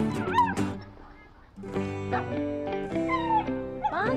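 Background guitar music, which dips briefly about a second in and then returns, with a dog's short high, sliding cries during play over it, once at the start and again about three seconds in.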